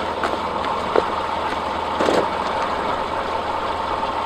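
Subaru Forester's engine running steadily near idle, with no revving.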